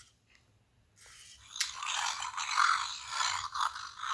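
Fingerlings Untamed T-Rex toy playing a harsh electronic roar from its small built-in speaker, set off by the toy being hung upside down. It starts suddenly about one and a half seconds in and rises and falls in loudness.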